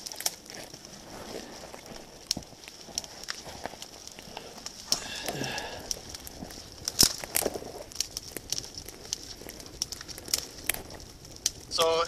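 Dry dead twigs snapping and a small kindling fire crackling, heard as irregular sharp cracks and snaps.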